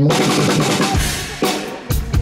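A live band's drum kit opening a song: a loud crash right at the start whose cymbal rings on, then heavy bass-drum and cymbal hits about every half second in the second half.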